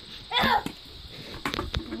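A child's short shout about half a second in, then two sharp knocks close together about a second later, and a laugh starting at the end.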